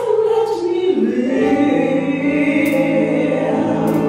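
A woman singing a gospel solo: her voice slides down in the first second and then holds one long note.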